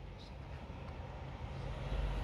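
Low rumble of a passing articulated city bus and street traffic, swelling louder near the end.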